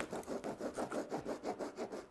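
A pen scratching across the leather side of a fox pelt along a ruler in quick, even strokes, about six or seven a second, marking out the lines for cutting strips.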